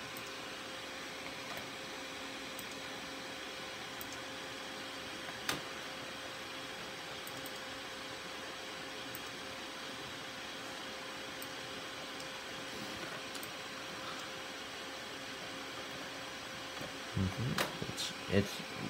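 Desktop PC running with a steady hum from its cooling fans, with a single light click about five seconds in.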